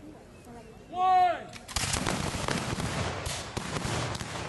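A loud shout about a second in, then a ragged volley of black-powder musket fire from about two seconds in, many shots crackling over one another.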